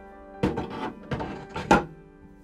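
Metal resin vat of a resin 3D printer being set down and seated in its frame: three knocks and clatters, the loudest near the end, over background music.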